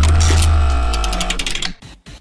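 Transition sound effect between news segments: a sudden deep bass hit with ringing tones and a rapid run of mechanical ticks, fading away after about a second and a half.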